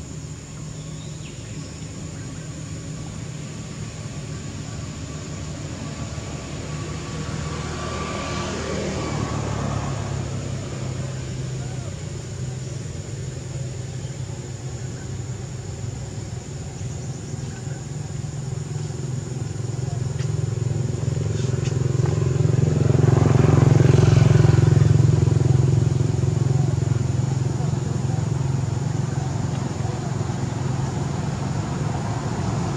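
Motor vehicles running on a nearby road, a low engine hum throughout: one passes about nine seconds in, and a louder one swells to a peak around twenty-four seconds in, then fades.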